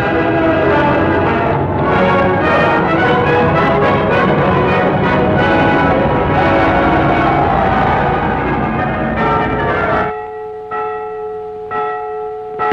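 Church bells ringing in a full peal, many bells overlapping. About ten seconds in the peal drops away, leaving a few bell tones ringing on.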